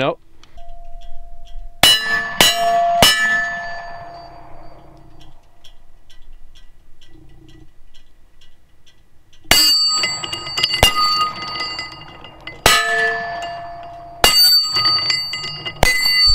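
Smith & Wesson M&P 9mm pistol shots: three quick shots about half a second apart near the start, then a second string of several shots spread over about six seconds. After the shots there is a lingering metallic clang.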